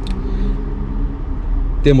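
Steady low rumble with a faint hum above it, heard inside a car's cabin; a man's voice begins a word near the end.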